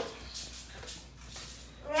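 A person making several short, breathy, strained exhales and vocal noises while struggling to get down sour pickles.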